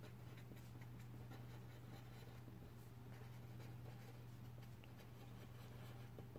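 Faint scratching of a pen writing on paper, over a steady low hum.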